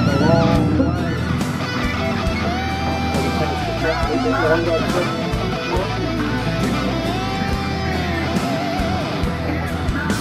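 Music with guitar, mainly electric guitar, with held, wavering notes.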